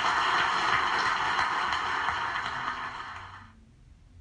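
Audience applauding, dying away about three and a half seconds in.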